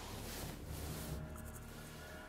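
Bedclothes rustling and rubbing as a person turns over in bed under a blanket, a scratchy fabric sound that swells and fades.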